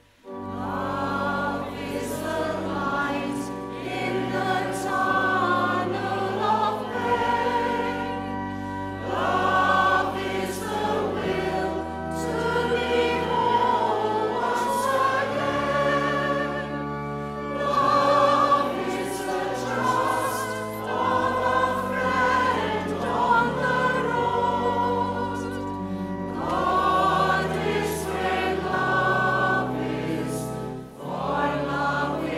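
A congregation singing a hymn together over sustained accompanying bass notes that change every few seconds. The singing comes in after a brief pause at the very start and pauses again briefly near the end, between lines.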